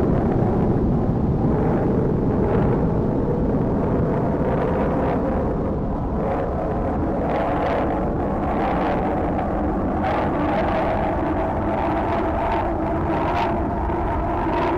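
Apollo 11 Saturn V rocket at liftoff: a loud, steady, dense rumble of the engines that holds without a break.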